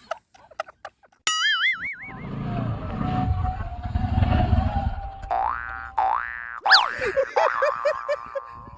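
Comic sound effects: a wobbling 'boing' about a second in. Then a motorcycle engine runs for a few seconds as the bike rides along a dirt track, followed near the end by several quick rising whistle-like sweeps.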